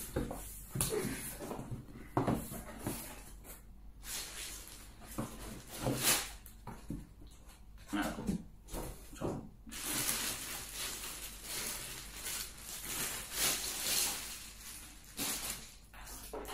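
Unboxing handling noise: a cardboard box is opened and handled, with a series of knocks and scrapes. From about ten seconds in, plastic wrapping rustles and crinkles for several seconds as a part is pulled from its bag.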